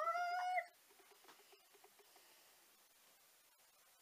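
A woman's high, drawn-out vocal whine that rises and then holds for under a second, then near quiet with faint small clicks.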